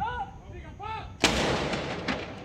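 Two short shouted commands, then a field gun fires a single salute round about a second and a quarter in: one loud blast with a long rolling decay.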